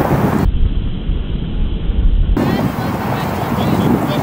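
Wind rumbling on an outdoor camera microphone, with faint distant voices from the field. For about two seconds in the middle the sound turns duller and more booming.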